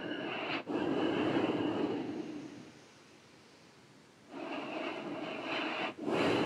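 A man's slow, deep breathing close to the microphone during a yoga breathing exercise, done while pulling hard on clasped hands: one long breath fading out about two and a half seconds in, a short pause, then the next breath starting just after four seconds.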